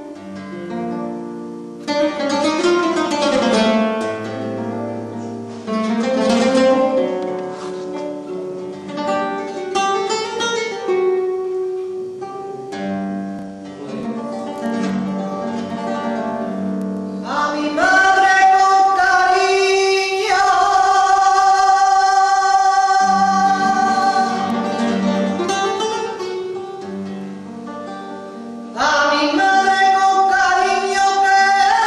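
Flamenco guitar playing an introduction of plucked runs and strummed chords. A little past halfway a woman's voice comes in over the guitar with long, held, wordless flamenco melismas, breaks off briefly near the end, and starts another phrase.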